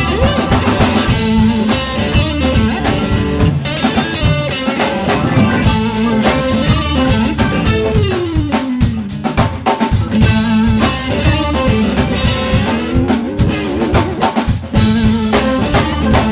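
Live funk-soul band playing an instrumental passage: electric guitar over a busy drum kit, with one note sliding down about halfway through.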